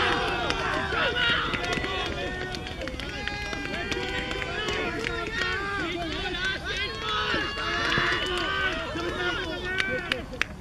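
Many voices overlapping and calling out at once, with no single clear speaker, and scattered short clicks.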